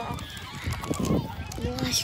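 Gulls calling in short honking cries, with people's voices in the background.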